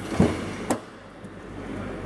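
Rear door of a Mitsubishi L200 pickup being opened by hand: a dull knock, then a sharp latch click about half a second later.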